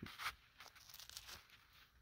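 Faint, brief rustling and scraping handling noises, one slightly louder scrape about a quarter second in, then only small scattered rustles.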